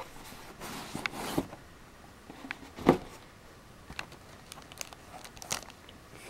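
Handling noise from a white cardboard storage box being opened and the plastic-sleeved booster packs inside being moved: scattered light rustles and clicks, with one sharper knock about three seconds in.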